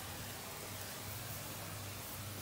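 Steady hiss of a hand-held sprayer wand misting degreaser, diluted three to one, onto a side-by-side's tyre and wheel, with a faint low hum underneath.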